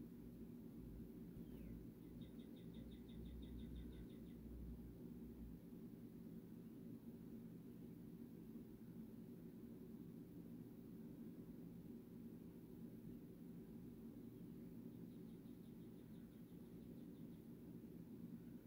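Near silence: room tone with a steady low hum, and a faint, rapid high-pitched trill about two seconds in that lasts about two seconds, coming again more faintly near the end.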